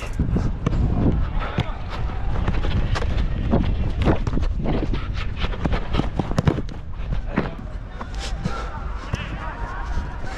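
Football game heard through a head-mounted action camera: wind rumble on the microphone, with footfalls and ball touches on artificial turf. Players call out near the end.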